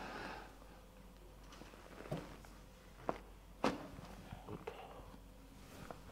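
A breath out trails off at the start, then three short sharp cracks about two to three and a half seconds in as hands press down on the upper back: joint pops from a manual thoracic spine adjustment.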